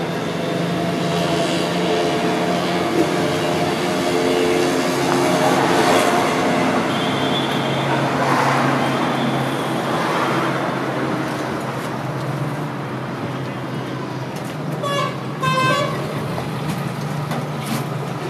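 Vehicle noise with a steady engine hum, and a vehicle horn tooting twice in quick succession near the end.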